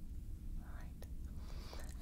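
Steady low starship engine rumble, the Enterprise-D ambience hum, with two faint soft breaths over it.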